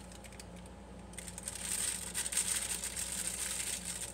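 Plastic piping bag crinkling as it is handled and filled with chocolate buttercream, starting about a second in, over a low steady hum.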